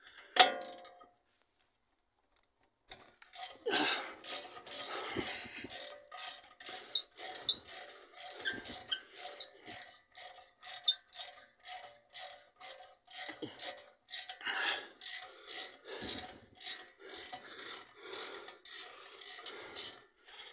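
A ratchet clicking in regular back-and-forth strokes, about two a second, as the rear brake caliper's bolt is undone with a size 7 hex bit. A single sharp knock comes just after the start.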